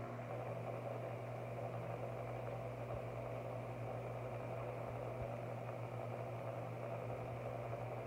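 Steady low mechanical hum with a faint even background noise, unchanging throughout.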